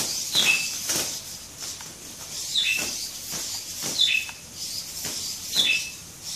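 Hobby servos of a 3D-printed hexapod robot whirring in short bursts as its legs step, each burst a click followed by a brief high two-note whine, repeating every second or so.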